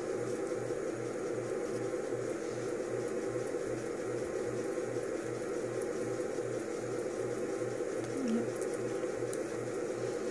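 Steady mechanical hum with a faint low throb repeating about three times a second.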